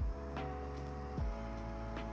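Lo-fi hip-hop background music: held keyboard chords that change about every second, over a deep kick drum that lands at the start and again a little after one second.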